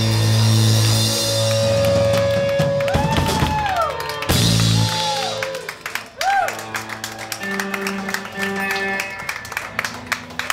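Live rock band with electric guitars, bass and drums playing loudly, with a few notes sliding up and down in pitch. About six seconds in the music drops away, leaving a few quieter guitar notes as the song ends.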